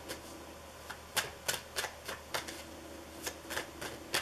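A tarot deck being shuffled overhand between the hands: an uneven run of light card snaps, about three a second.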